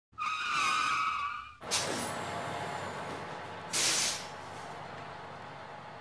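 Produced intro sound effects: a high squeal for about a second and a half, then a sudden whoosh sliding down in pitch into a steady rumble, with a short hiss about four seconds in.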